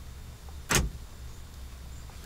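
Power door lock actuators of a 2009 Chevrolet Silverado unlocking on a scan-tool command: one brief clunk about three quarters of a second in.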